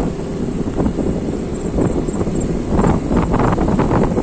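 Wind buffeting the microphone: a loud, steady low rumble, with stronger gusts about three seconds in.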